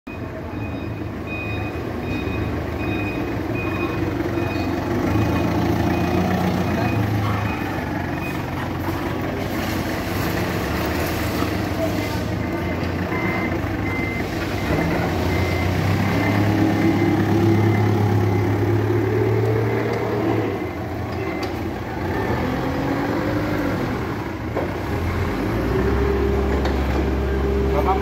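Forklift engine running and revving, its pitch rising and falling around the middle, over the steady run of other vehicle engines. An alarm beeps in short pulses about twice a second through the first third, and a similar, slightly lower beep repeats later on.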